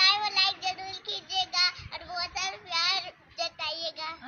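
A young girl singing in a high voice, her pitch wavering through short phrases.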